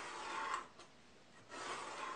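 Pen tip drawing along the edge of a steel square on plywood: two marking strokes, the second starting about a second and a half in.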